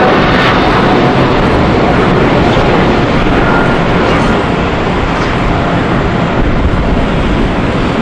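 Boeing 777-300ER's twin GE90-115B turbofans at takeoff thrust as the jet climbs away after takeoff: a loud, steady jet noise that eases slightly in the second half.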